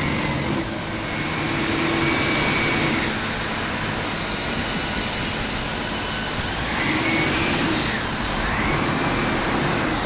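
SANY SRSC45H reach stacker's diesel engine running close by, a steady rushing noise that grows louder twice, with a faint whine each time.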